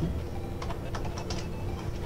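Computer keyboard typing: about eight keystroke clicks at an uneven pace.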